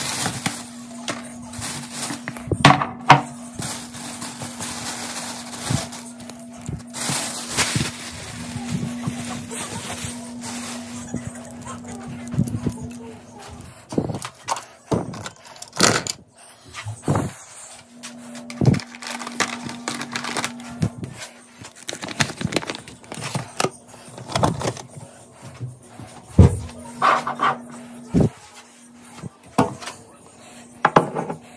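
Thin plastic shopping bag rustling and crinkling as items are pulled out of it, then small toiletry and makeup items clicking and knocking as they are picked up and set down on a shelf, over a steady low hum.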